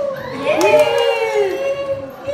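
A small group of women cheering and shouting together in overlapping high voices, with a few hand claps about half a second in.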